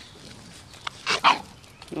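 A puppy gives a single short, sharp bark about a second in, the loudest sound here, with a faint click just before it.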